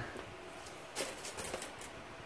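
A few light clicks and a soft rustle as a Parker Jotter ballpoint pen is laid down on a plastic sheet, about halfway through.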